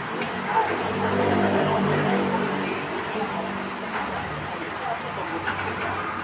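A road vehicle's engine running steadily close by for a few seconds, fading out past the middle, under people talking.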